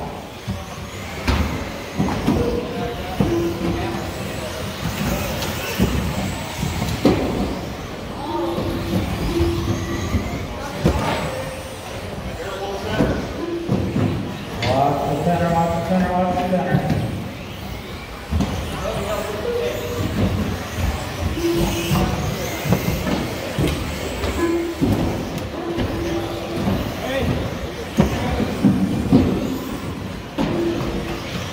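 Electric 2WD RC buggies racing on an indoor carpet track, with motor whine and tyre noise under voices from the hall. Scattered short clicks and knocks run through it.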